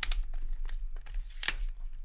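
MeFOTO BackPacker travel tripod's telescoping leg sections being pulled out and locked by hand, giving a few sharp clicks, the loudest about one and a half seconds in, with lighter handling ticks around them over a low hum.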